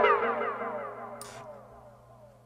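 Echo tail of a synth pluck fading out, its repeats run through a flanger so the pitch glides downward as it dies away over about a second and a half. A short burst of hiss comes a little after a second in.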